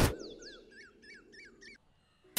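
Faint bird calls: a quick series of about six short, swooping chirps, roughly four a second, that stop a little before the two-second mark.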